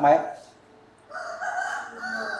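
A rooster crowing once: a single drawn-out call that starts about a second in.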